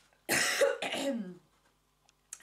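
A woman coughing into her fist, one loud burst about a quarter second in with a falling voiced tail that fades out by about a second and a half. She is ill and not well at all.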